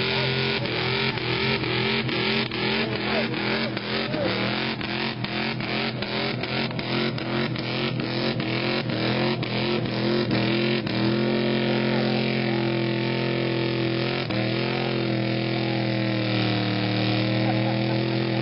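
Engine of a Dodge pickup truck held at high, steady revs as its wheels spin in deep mud, with a regular thumping about three times a second for the first half and a small change in pitch partway through.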